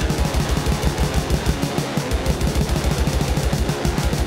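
Instrumental stretch of an extreme-metal track: distorted electric guitar over fast, evenly spaced drum beats, with no vocals.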